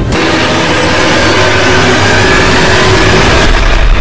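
Sound-effect track of an animated subscribe end screen: a loud, dense rushing noise that starts abruptly, with a deep rumble swelling near the end.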